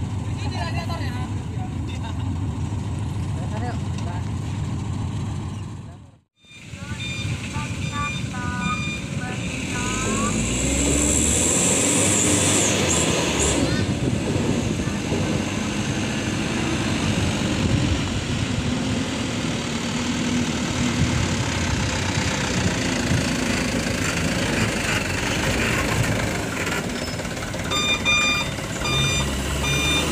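Heavy truck engines running on a muddy road, with a truck's reversing alarm beeping in evenly spaced pulses for a couple of seconds after a brief dropout about six seconds in, and again near the end. A high hiss lasts a few seconds about ten seconds in.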